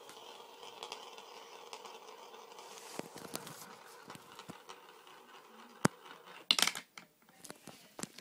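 Plastic sand wheel toy being handled: a faint steady hiss with a few light clicks, then one sharp click and a short burst of loud plastic knocks and rattles near the end.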